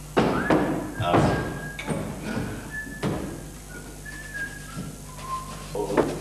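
A person whistling a few short notes of a tune, stepping down in pitch near the end, over several loud knocks and thuds, most of them in the first half.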